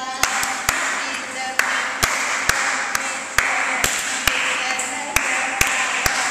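Sharp time-keeping beats for dance practice, claps or strikes, settling into a steady pulse of about two a second after a short pause near the start, over a hissing noise.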